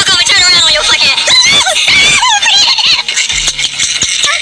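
A high-pitched voice vocalising in wavering, rising and falling glides, broken into short phrases.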